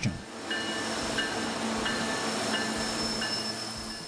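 CSX diesel-led freight train rolling past on a curve: a steady low hum with a wash of rail noise. Several short high squeals come and go, the wheels squealing against the rails on the curve.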